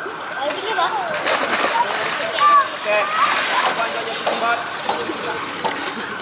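Children's voices calling and shouting over water splashing in a swimming pool, the splashing busiest in the first half.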